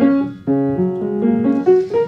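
Yamaha P45 digital piano playing a short phrase of bass notes under a moving upper line, with a brief break just under half a second in before the next phrase begins.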